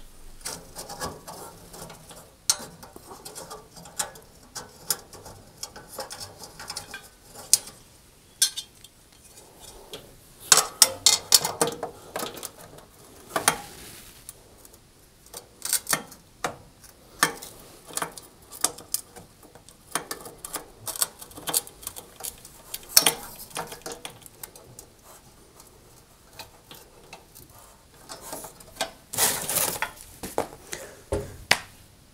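Irregular clinks, knocks and scraping of thin sheet-metal parts as a cooker's grill-compartment bracket and baffle plate are handled and fitted back into place, with the loudest clusters of knocks near the middle and near the end.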